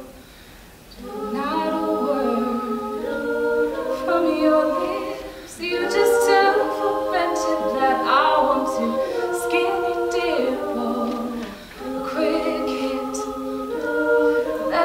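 Women's a cappella group singing held chords in close harmony, with no instruments. The chords come in about a second in, change every second or two, and drop away briefly near the end before coming back.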